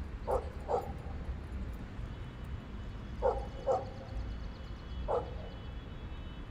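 A dog barking five times: two barks close together, two more about three seconds later, and a single one near the end.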